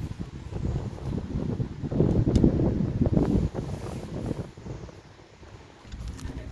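Wind buffeting the microphone: an uneven low rumble that swells about two seconds in and dies down near the end.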